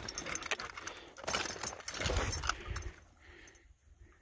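Footsteps and rustling on a log bridge through brush, with light metallic jingling and clicks of hiking gear. It goes much quieter after about three seconds.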